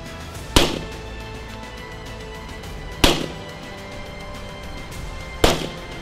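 Three single gunshots, about two and a half seconds apart, each followed by a short echo, over background music.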